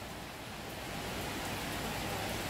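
Steady background noise: an even hiss with a faint low hum, no distinct events.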